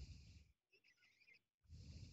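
Near silence but for a person's faint breathing close to the microphone: two soft breaths with a low puff, about a second and a half apart, with a quieter hissy breath between them.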